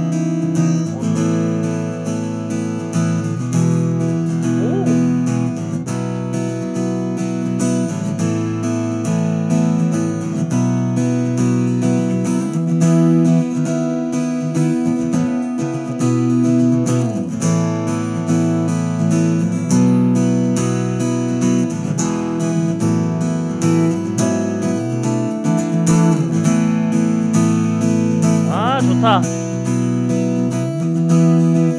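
Breedlove King Koa acoustic guitar strummed in steady rhythmic chords, heard amplified through its pickup and an AER acoustic amp. The sound is soft and rich in overtones.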